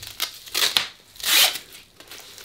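Nylon strap of a North American Rescue Gen 7 CAT tourniquet rustling and scraping in three short bursts as it is wrapped around an upper arm.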